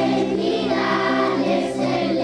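A group of children singing a song together over steady instrumental backing music.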